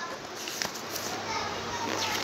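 Faint children's voices in the background over steady room noise, with a light click a little past half a second in.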